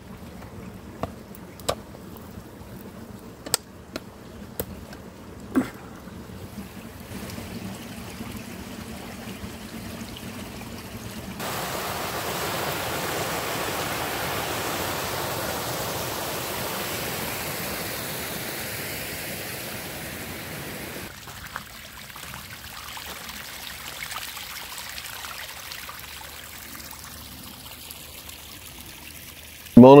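A fast woodland stream rushing over rocks, a loud steady rush starting suddenly about a third of the way in and cutting off about ten seconds later. Before it, a faint hiss with a few sharp snaps; after it, a quieter steady hiss.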